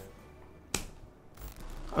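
Online slot game's sound effects as the reels give way to the bonus screen: a sharp click a little under a second in, then a short swish, over faint game music.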